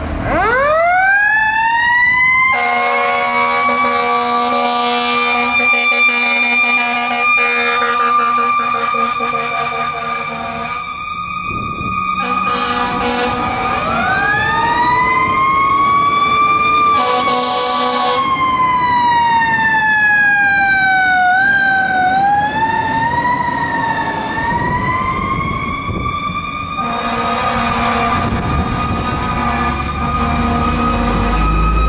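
Rosenbauer Commander tiller ladder truck responding with its siren winding up from low to a high held wail, with long blasts of its air horn in a steady chord over it. Around the middle the siren winds down and back up, then is pushed up and down in short steps before rising again, and the air horn sounds once more near the end.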